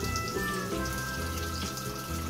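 Kitchen tap running into a sink, water splashing onto dishes, over background music.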